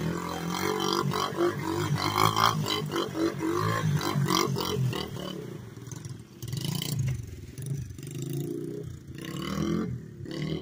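Small pit bike with a Honda TRX90 single-cylinder four-stroke engine revving hard in quick bursts as the rear wheel spins and slides on gravel. About halfway through the engine note drops and then rises and falls, farther off, as the bike rides away.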